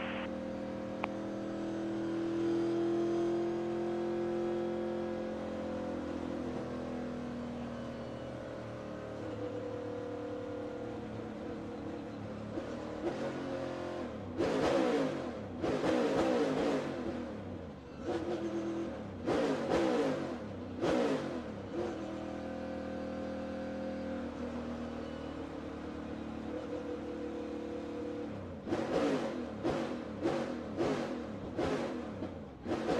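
NASCAR Cup car's V8 heard from inside the cockpit, running at part throttle on the lap after the checkered flag, its pitch drifting slowly. About halfway through it is revved hard in a string of short bursts, steadies again, then revs in more bursts near the end.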